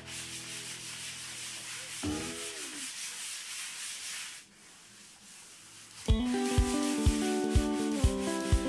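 Hand sanding with the fine side of a sanding sponge over luan plywood, smoothing dried wood filler over nail holes: scratchy back-and-forth rubbing strokes. About six seconds in, background music with a steady beat comes in over it.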